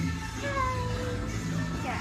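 A cat meowing: one long drawn-out meow that sinks slightly in pitch, and a short falling call near the end.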